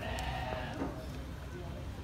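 A Beni Guil sheep bleating once, a held call lasting a little under a second at the start.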